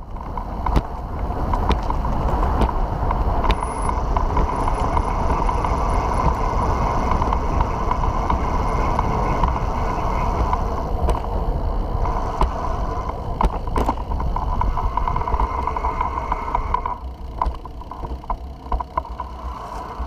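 Recumbent trike rolling along a concrete bike path: steady rushing wind and road noise on the trike-mounted camera, with a few sharp clicks and rattles. It gets quieter near the end.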